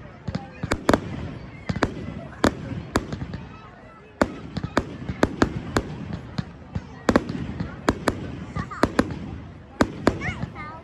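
Fireworks display: an irregular, rapid string of sharp bangs and crackles over a low rumble, with a short lull a little before the middle.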